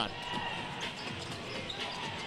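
Basketball being dribbled on a hardwood court over the steady murmur of an arena crowd.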